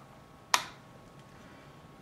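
A single sharp click about half a second in: the selector switch of a variable DC power supply being turned to a higher voltage step.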